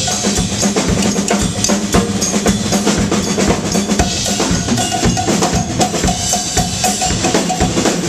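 Percussion groove of a funk band: drum kit with bass and snare drum, and a hand-held cowbell struck with a wooden stick in a steady, rapid rhythm.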